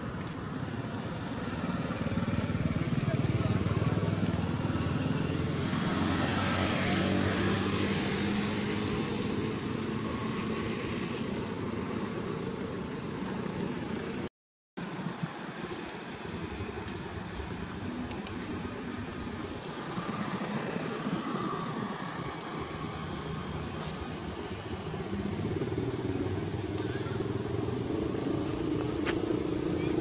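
A motor engine running, with indistinct voices in the background; the sound drops out briefly about halfway through.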